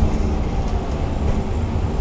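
Gillig Advantage LF low-floor transit bus heard from the driver's seat while driving along: a steady low engine and road rumble.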